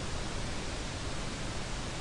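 Steady hiss of background noise from the recording, with no other sound in it.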